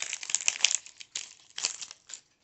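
Foil wrapper of a trading-card pack crinkling in irregular bursts as the cards are pulled out of it, densest in the first second.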